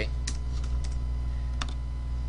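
A few separate clicks of a computer keyboard and mouse, the loudest about one and a half seconds in, over a steady low hum.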